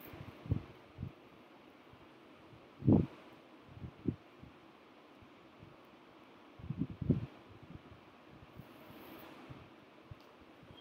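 A few short, dull low thumps over faint steady background noise. The loudest comes about three seconds in, and a small cluster follows around seven seconds.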